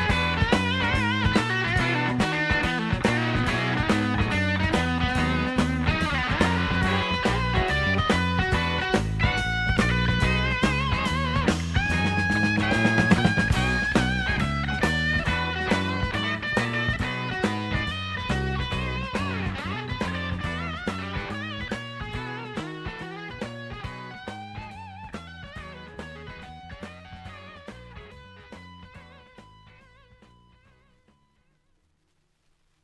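Blues band playing an instrumental passage led by electric guitar, with a steady drum beat, that fades out over the last ten seconds as the song ends.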